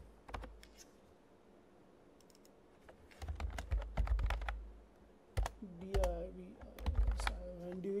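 Typing on a computer keyboard: clusters of quick key clicks in the first second, a pause of about two seconds, then steadier typing from about three seconds in.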